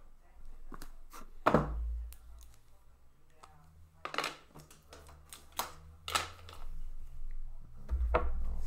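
Shrink-wrapped Upper Deck The Cup hockey card boxes handled on a counter: one solid thump about a second and a half in as a box is set down, then a few short sharp rustles and taps as the plastic-wrapped boxes are moved.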